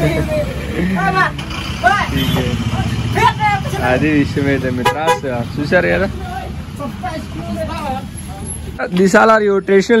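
People talking in a local language over a steady low rumble of street traffic, with a burst of loud laughter near the end.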